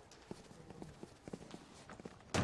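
Faint, irregular taps and knocks, about six light strikes spread unevenly over low background hiss.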